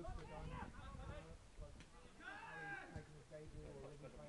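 Faint, indistinct shouts and calls from footballers on the pitch, including one longer call about two seconds in.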